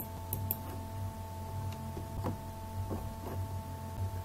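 A steady low electrical hum with two faint steady whining tones over it, and a few soft short clicks spread through it.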